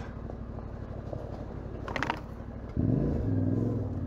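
Yamaha Ténéré 700's parallel-twin engine running at low revs on a slow trail ride, then picking up sharply about three seconds in as the throttle opens. A brief clatter comes about halfway through.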